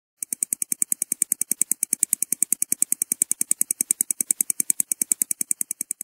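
Mechanical stopwatch ticking fast and evenly, about ten ticks a second.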